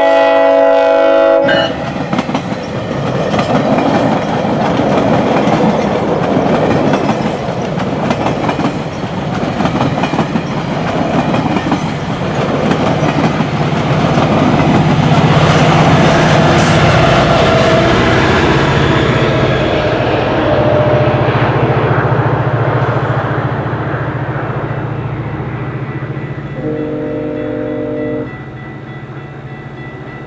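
GO Transit train of bilevel coaches passing: a loud multi-note horn chord that cuts off about a second and a half in, then the rumble and clatter of wheels on rail building to its loudest around the middle. A steady low engine drone holds through the second half as the noise fades, and a shorter, fainter horn chord sounds near the end.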